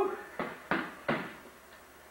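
Foam-padded pugil sticks striking each other in sparring: three quick, dull hits about a third of a second apart.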